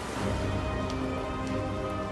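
Background ambient music holding sustained tones, over a steady rain ambience.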